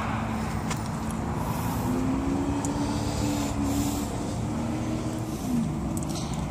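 Steady low rumble of motor vehicles outside, with a faint engine hum that swells and fades in the middle and a couple of light clicks.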